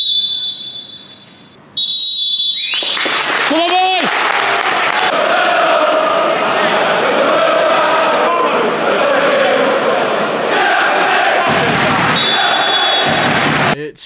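Referee's whistle blown twice at the start, followed by a stadium crowd cheering and shouting loudly and steadily. A shorter, fainter whistle sounds near the end.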